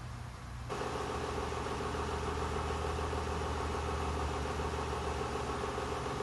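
A steady low droning hum with a few held tones, starting abruptly under a second in and holding at an even level.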